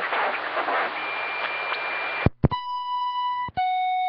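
CB radio receiving a weak lower-sideband signal buried in static, with a thin steady whistle over it. The signal cuts off with a click, and two electronic beeps follow, a higher one and then a lower one of about a second each: a roger beep marking the end of the other station's transmission.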